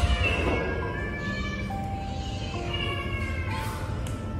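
Several cats and kittens meowing, with bursts of calls near the start and again past the middle: hungry cats begging to be fed. Background music with long held notes plays under them.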